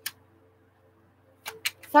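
A pause in a woman's speech: a faint steady hum, with one short click near the start and a few quick ticks just before she speaks again near the end.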